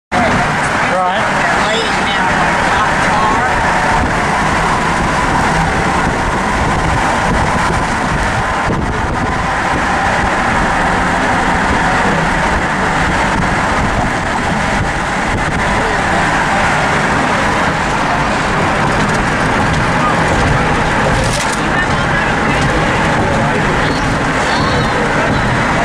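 Steady road and wind noise inside the cabin of a moving car.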